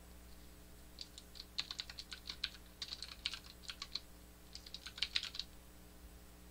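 Computer keyboard keys being typed, in quick runs of clicks from about a second in until near the end, with short pauses between the runs.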